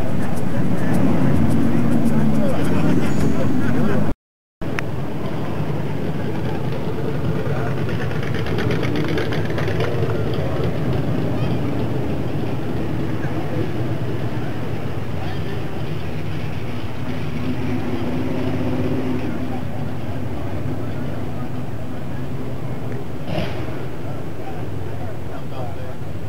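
Title-sequence music for about four seconds, cut off abruptly. After a brief silence, a car engine idles steadily with faint voices in the background.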